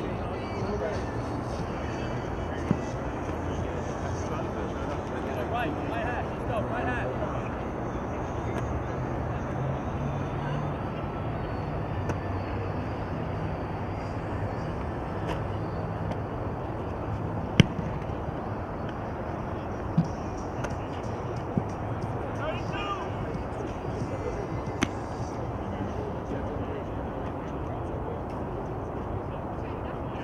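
Open-air football field ambience: distant chatter of players and coaches, broken by a few sharp smacks, the loudest about two-thirds of the way through.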